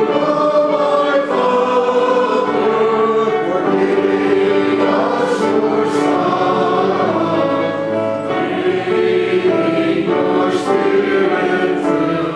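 Choir singing a hymn in long held chords, with a few sharp 's' sounds from the words.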